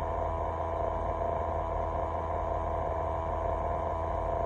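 Idling truck engine: a steady low rumble and hum, heard inside the cab.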